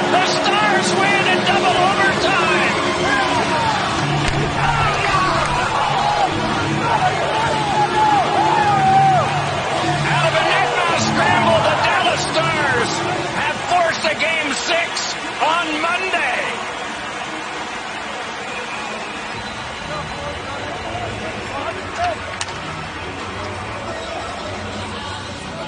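Hockey players shouting and whooping in celebration of a game-winning overtime goal, over music. The shouting dies down about two-thirds of the way in, leaving the music.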